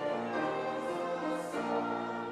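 A congregation singing a hymn together with piano accompaniment, in steady held notes that move from one to the next every half second or so.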